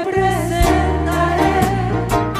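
Several women singing a worship song into microphones, amplified over a band accompaniment with a steady bass line and a regular beat.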